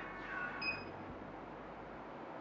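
A faint, short electronic beep about half a second in, the key tone of a Multilaser Style car head unit's touchscreen as the radio function is selected, over low, steady room tone.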